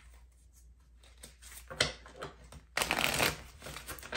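Tarot cards being shuffled and handled by hand in short rustling bursts, the longest and loudest about three seconds in.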